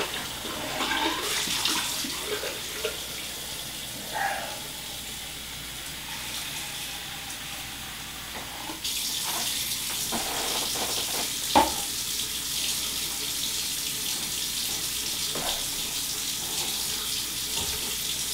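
Water running steadily from a tap, growing louder about halfway through, with a sharp knock about two-thirds of the way in.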